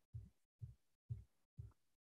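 Faint, soft low thumps, evenly spaced at about two a second, with dead silence between each.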